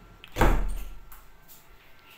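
A door thudding shut once, about half a second in, with a short fading after-ring.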